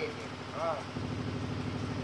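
A small engine running steadily at a low, even pulse.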